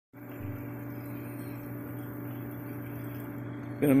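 Sand filter pool pump motor running with a steady hum, the water circulating.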